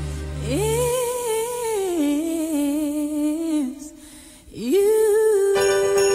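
Female voice singing long held notes with vibrato over a sparse backing: one note held, a drop to a lower held note, a brief break, then a note scooped up into and held as bright jingle bells and the full instrumental come in near the end.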